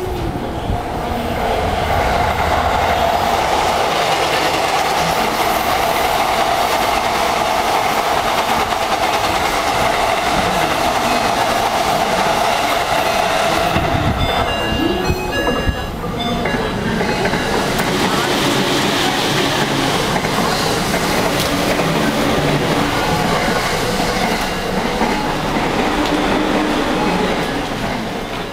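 Yamanote Line electric commuter train running on the track, a steady rumble of wheels on rail with a strong steady hum. About halfway through this gives way to the more diffuse din of a busy station platform.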